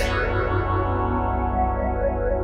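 A sustained synthesizer chord played through a frequency-shifter plugin with its resonator effect on, giving a shimmering, echoing sound. A bright high hiss at the very start fades away within the first half-second.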